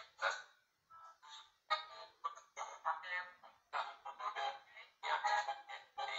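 Spirit box app playing through a phone speaker: short, choppy fragments of voice-like sound, each cut off after a fraction of a second and followed by the next. The user reads these fragments as spirit words (captioned "speed bump", "freezer").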